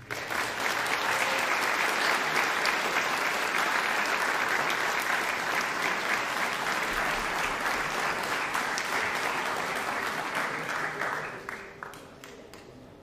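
Audience applauding, starting at once, holding steady, then dying away near the end.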